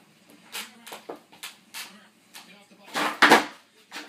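Skateboard ollie on carpet: a few light knocks of board and feet, then a loud double clack about three seconds in as the tail pops and the wheels land.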